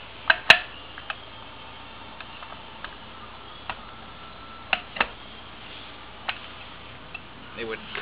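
Metal parts of an old Reeves-drive variable pulley and motor clicking and knocking as they are handled and fitted together, with two sharp clicks in the first second and about eight lighter ones spread out after.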